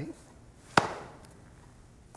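A single sharp knock about three-quarters of a second in, with a short fading tail.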